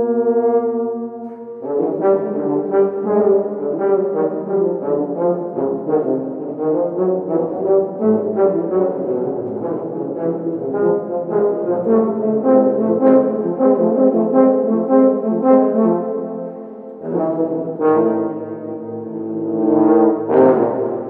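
A small ensemble of wind instruments with a brass-like sound playing contemporary chamber music. It opens on a sustained chord, breaks into a run of quick, detached notes about two seconds in, pauses briefly near the end, then holds a chord again.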